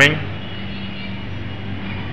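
Steady machine whir with a low, even electrical hum, unchanging throughout.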